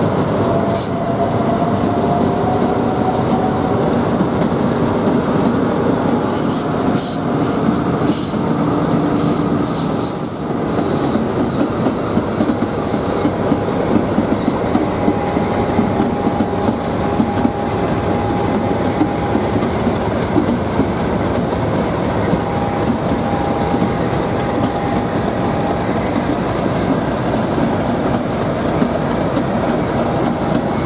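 Class 50 diesel-electric locomotive 50 049 'Defiance' running as it moves slowly along the platform, its English Electric engine making a steady rumble. Long, steady wheel squeals come and go through the middle, with a rising whine near the start.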